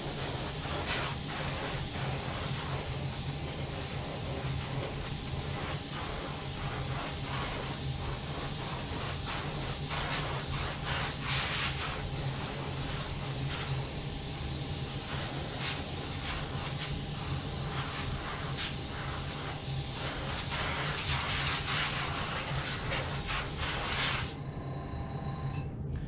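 Airbrush blowing a steady hiss of air over a freshly painted lure to dry the paint. A low hum runs underneath, and the hiss cuts off about two seconds before the end.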